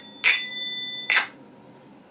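A pair of metal finger cymbals (zills) struck together, ringing with several clear high tones for almost a second, then a second short clink.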